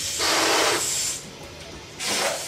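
Breath rushing as a latex balloon is blown up by mouth: one loud rush of air lasting about a second, then a fainter trail of breath.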